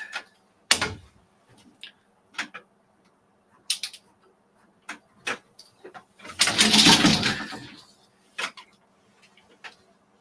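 Wooden tama bobbins on a takadai braiding stand knocking and clicking as they are moved, single clicks every second or so, with one longer, louder clatter about six and a half seconds in.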